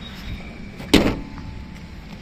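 A Tata Vista's bonnet slammed shut once, about a second in: a single sharp bang with a brief ring after it.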